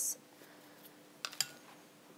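Light kitchen clatter: a quick cluster of three or four small clicks a little past halfway, from utensils handled on a countertop, over a faint steady hum and quiet room tone.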